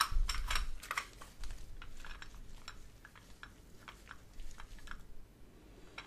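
Irregular light clicks and taps close to the microphone, coming thick and fast for the first couple of seconds, then sparser.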